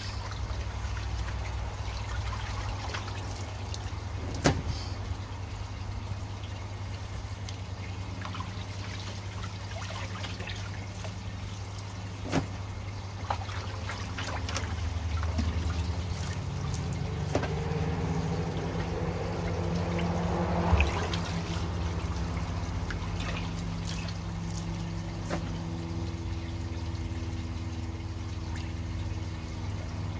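Water sloshing, splashing and dripping as bristle filter brushes are swished through a koi pond filter's vortex chamber and lifted out to drain, with a few sharp knocks. A steady low hum runs underneath.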